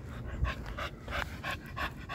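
Pocket American Bully dog panting quickly, about five short breaths a second.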